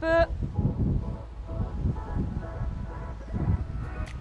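Wind buffeting the microphone: a low rumble that rises and falls in gusts, with faint music underneath.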